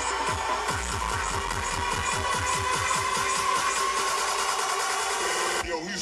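Hardstyle dance music played loud over a festival sound system: a fast, steady kick drum, each hit dropping in pitch, under a held synth chord. Near the end the kick cuts out suddenly and the track breaks into wobbling, bending synth sounds.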